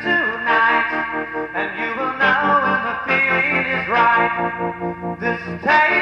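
Indie rock song, an instrumental stretch led by guitar with no vocals. The chords change about once a second and some notes bend in pitch.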